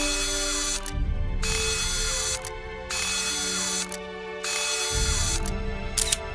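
Background music with sustained tones, overlaid by a mechanical sound effect that comes in four bursts of about a second each, with short gaps between them.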